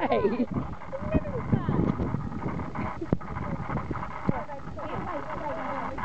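Women's voices and laughter, loudest at the start, with a few sharp clicks later on.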